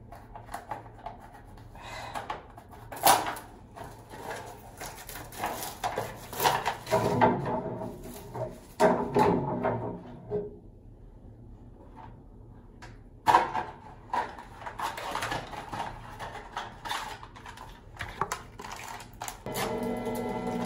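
Rustling, crinkling and clicking of a pregnancy test's packaging being handled and opened, in irregular bursts. It goes quiet for a few seconds about halfway through, then a sharp click starts the handling noise again.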